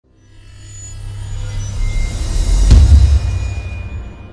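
Intro logo sound effect: a deep rumbling swell that builds for over two seconds into a heavy bass hit, then slowly fades away.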